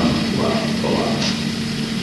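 Steady electrical hum and hiss of a low-quality 1970s amateur tape recording, with a few faint voice sounds in the first second or so.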